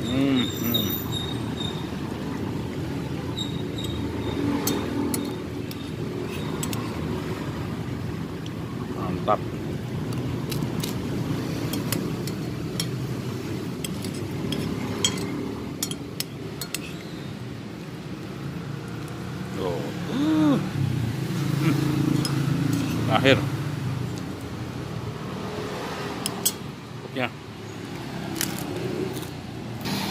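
Steady roadside traffic noise with indistinct voices in the background, and occasional light clicks of a metal spoon on a glass plate.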